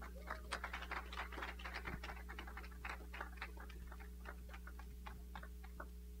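Faint, scattered clapping from a congregation: quick, irregular claps that thin out after about three seconds, over a steady low electrical hum.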